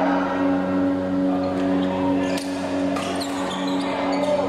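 Badminton play on an indoor court: a few sharp racket strikes on a shuttlecock, with short shoe squeaks near the end. Under them runs a steady low hum.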